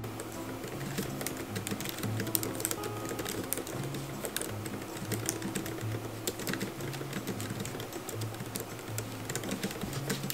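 Fast, irregular typing on a laptop keyboard, a steady patter of key clicks, over soft background music.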